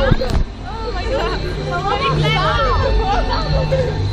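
Several people chattering and calling out, a babble of voices over a steady low rumble, with a sharp knock near the start.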